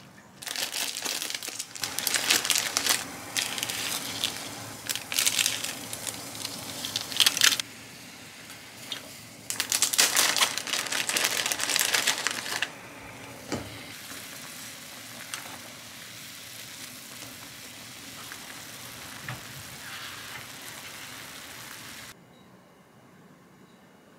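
Plastic instant-ramyun packet crinkling loudly as it is handled and opened, in two bouts of a few seconds each. After that a steady soft hiss from the pot on the lit gas burner, with a single click.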